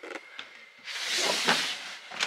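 A plastic snake tub sliding out of a rack shelf: one scraping hiss about a second long, after a couple of light clicks.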